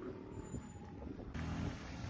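Faint road traffic: a motor vehicle's engine running as it drives along the road, a low rumble.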